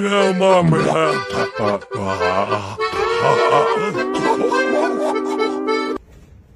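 Accordion music playing a tune, cutting off suddenly at the end.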